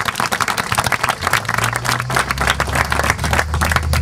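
A crowd of people applauding with a steady patter of hand claps. A low steady hum comes in about a second in.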